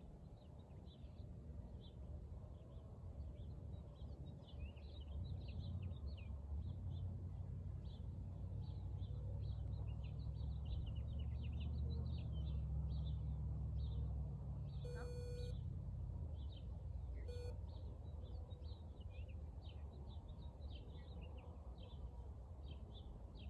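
Outdoor ambience of many small birds chirping throughout, with a low rumble that swells over the middle and fades. Two short beeps come near the end, the first about half a second long and the second brief.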